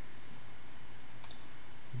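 Steady microphone hiss with a single faint computer-mouse click a little over a second in.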